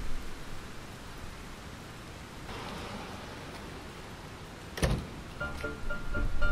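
Steady hiss of rain with a single sharp knock about five seconds in, followed by background music starting up near the end.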